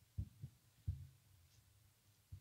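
Three soft, dull low thumps in the first second: handling bumps at a lectern's music stand and microphone. A faint low hum follows.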